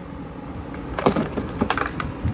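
A handful of sharp clicks and knocks from the mower engine's plastic top cover being lifted off and handled, bunched in the second half.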